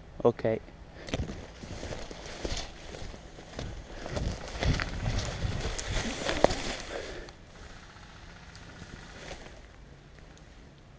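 Running footsteps and the rustle of grass and undergrowth brushing past a helmet-mounted camera, with gear knocking, for about six seconds. It dies down to a quiet hiss near the end as the runner drops low into the grass.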